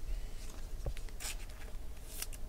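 Trading cards handled in the fingers: a faint click, then a short scraping rustle of card stock sliding against card stock a little after a second in.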